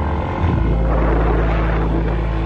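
Motorbike engine running at a steady speed while riding, with wind and road noise; its low hum grows stronger about half a second in.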